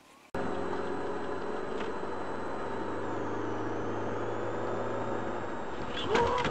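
Car engine and road noise heard from inside the cabin, steady throughout, starting abruptly a third of a second in.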